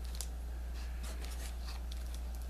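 Faint, scattered crinkles and rustles as a wrapped cigar is lifted from a cardboard box and handled, over a steady low hum.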